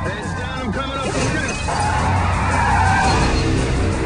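Dramatic music with a car skidding about two seconds in; brief voices at the start.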